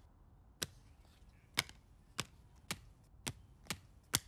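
Trading cards slapped down one at a time onto a wooden table: six short, sharp snaps, about one every half second, coming a little faster toward the end.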